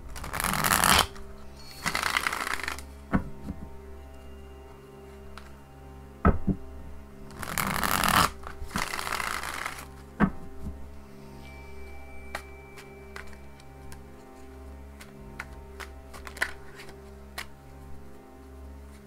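An Omega Land Tarot deck being riffle-shuffled: two quick riffles near the start and two more about halfway through, each a short burst of flapping cards, with sharp taps in between as the deck is squared. Soft instrumental music plays steadily underneath.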